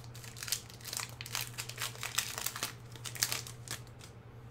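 Plastic wrapper of a Magic: The Gathering booster pack crinkling as it is handled and torn open, a dense run of sharp crackles, over a steady low electrical hum.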